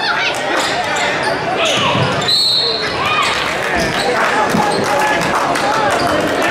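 Indoor basketball game on a hardwood court: the ball bouncing, sneakers squeaking, and voices from the bench and stands. A referee's whistle blows once, briefly, about two and a half seconds in.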